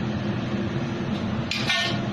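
Steady drone of a kitchen range hood fan over a lidded wok on a gas burner. About a second and a half in, the lid comes off and a short, sharp hiss of steam and sizzle escapes.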